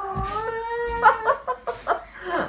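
Baby whining in jealous protest: one long drawn-out cry, rising slightly in pitch, then a few short broken whimpers.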